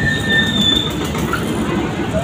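A train running along with a steady rumble, and a high, steady squeal of metal wheels on the rails that fades out about halfway.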